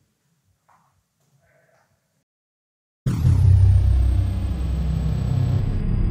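Near silence, then about three seconds in a loud logo-sting sound effect starts suddenly: a deep car-engine sound with a thin high whine over it that slides down in pitch and then holds.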